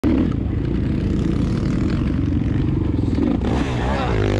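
Dirt bike engine running steadily as the bike is ridden on a motocross track. Near the end a swooping sound with gliding pitch comes in over it.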